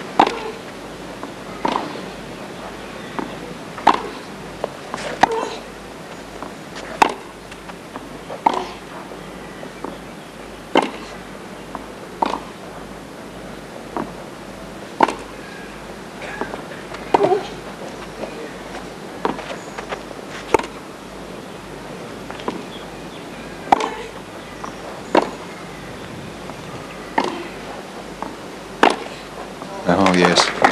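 Tennis ball struck back and forth by racquets on a hard court in a long baseline rally: a sharp pock about every second and a half, over steady background noise.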